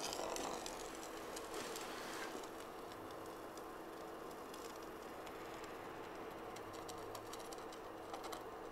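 Small wooden spinning top with a needle tip spinning on a glass plate: faint dry ticking and rattling of the needle point on the glass, the ticks crowding together near the end.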